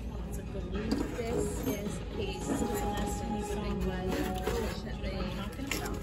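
Shop ambience: background music over faint, distant voices, with no close speech.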